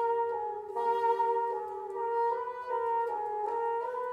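Chamber wind music: a solo bassoon high in its range plays short slurred figures over a soft, sustained clarinet note with a trill.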